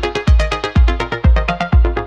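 Rajasthani Meena folk song in DJ style, with an electronic beat: a heavy bass kick about twice a second under a quick pitched melody.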